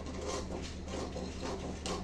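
Scissors cutting through paper pattern: a few faint snips.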